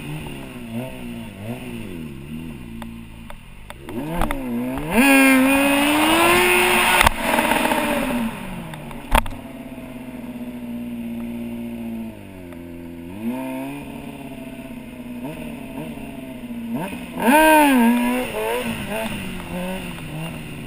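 Stunt motorcycle engine, heard from a camera mounted on the bike, revved up and down continually as the rider works the throttle through tricks. It rises to its highest, loudest revs about five seconds in, holds a steady pitch for a couple of seconds in the middle, and gives another sharp high rev near the end. A single sharp click sounds about nine seconds in.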